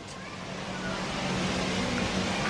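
Outdoor background noise: a steady rush like distant traffic that grows a little louder, over a faint low steady hum.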